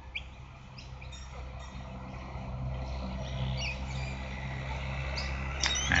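Birds chirping outdoors in scattered short calls, over a steady low background hum that grows louder toward the end.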